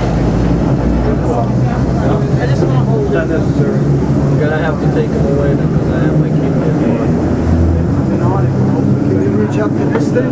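Vintage museum subway train running along the track, a steady low motor hum heard from on board, under the indistinct chatter of riders.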